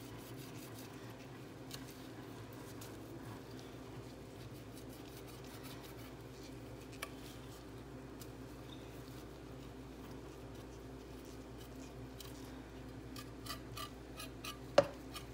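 Faint scraping and handling as a knife cleans raw goat head and feet in a plastic bowl, with scattered light clicks and a quicker run of clicks near the end, over a steady low hum.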